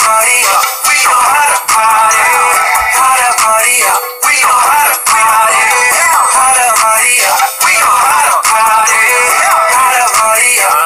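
Music with autotuned male singing, loud and continuous, with a few brief drops in level.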